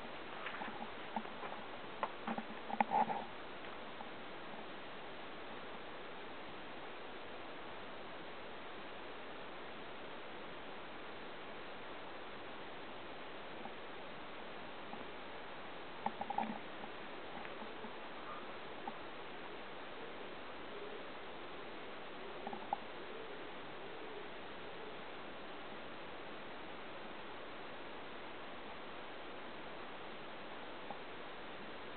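A steady hiss of background noise, with a few short rustles and clicks: a cluster in the first three seconds, a couple about halfway through and one more a little later. These are footsteps and handling noise from someone walking with a handheld camera.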